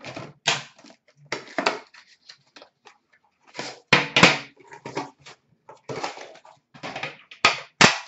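Handling of an Upper Deck Premier hockey card box and its metal pack tins as the box is opened and the tins are lifted out and set down: a string of irregular knocks, scrapes and clicks, loudest about four seconds in.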